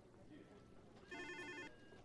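Desk telephone giving one short electronic trill ring, a rapidly pulsed multi-tone burst a little over a second in, against near silence.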